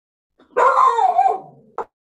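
An excited dog barking: one drawn-out call about a second long that falls slightly in pitch, followed by a short sharp click near the end.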